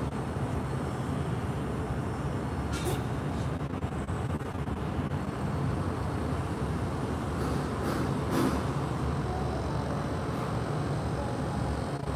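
Steady low outdoor rumble, with brief hissy rustles about three seconds in and again around eight seconds in.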